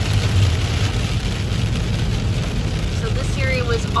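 Steady road noise inside a moving car on a rain-soaked road: a low rumble with the hiss of tyres on wet pavement and rain on the windshield. A voice starts talking near the end.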